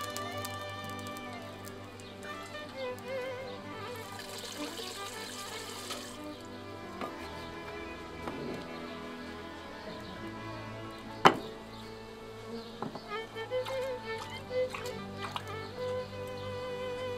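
Background instrumental music with a wavering melody over steady held tones, and one sharp knock about eleven seconds in.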